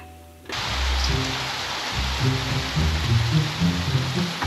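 Steady hiss of rain that comes in suddenly about half a second in, over background music with low bass notes.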